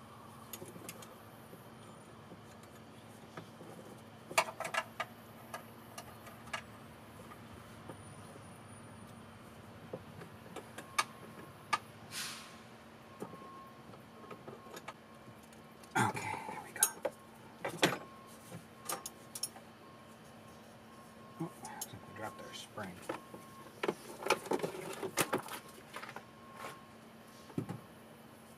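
Hand work on a golf cart engine: small metal parts and tools clinking and knocking as the carburetor is fitted back in, with bursts of clatter around the middle and again near the end, over a faint steady hum.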